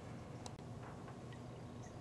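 Quiet room tone with a faint click about half a second in.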